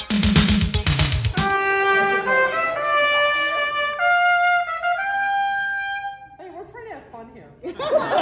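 A trumpet being play-tested right after a friend's on-the-spot repair check, playing a phrase of held notes that climbs in pitch and ends about six seconds in. For about the first second and a half, intro music with a beat is heard before the trumpet comes in.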